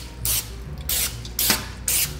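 Aerosol can of Pam cooking spray giving several short hissing spurts onto a metal baking sheet.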